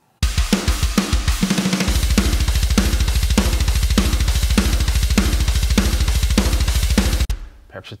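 Metal drum kit playing back: kick hits at first, then a fast sixteenth-note double-kick run from about two seconds in under steady snare hits and cymbals, stopping suddenly near the end. The kick is dipped by about a decibel with volume automation to tame the extra energy of the sixteenths.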